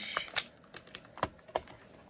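A few separate light clicks and a faint crinkle: a clear photopolymer stamp being peeled off its plastic carrier sheet and the plastic stamp-set case being handled.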